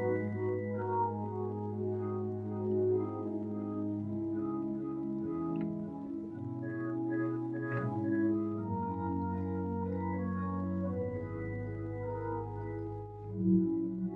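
Church organ playing a slow piece of long-held chords on the manuals over sustained pedal bass notes, the harmony shifting every few seconds.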